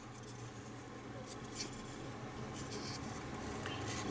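Faint scratchy rubs of fingers shifting their grip on a die-cast and plastic model starship, a few brief ones spread through, over a low steady hum.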